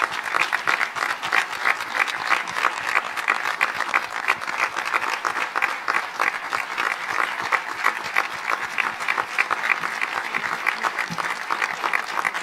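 Audience and on-stage musicians applauding: steady, dense clapping from many hands.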